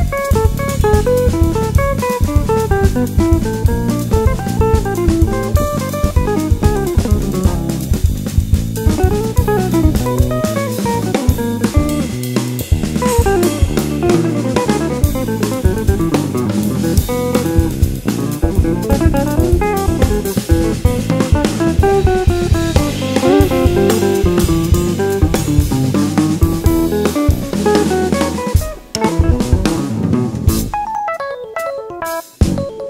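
Instrumental jazz samba played live by a quartet: an archtop electric guitar plays fast running melodic lines over a drum kit's samba groove with cymbals and an electric bass. The sound drops briefly near the end.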